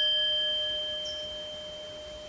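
A bell-like struck metal tone, such as a chime, ringing on with several clear pitches above one another and slowly fading away.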